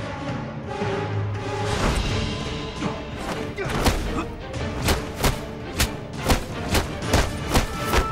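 Dramatic score music with drums, joined from about halfway through by a run of sharp hit sound effects from a staged hand-to-hand fight, about two a second.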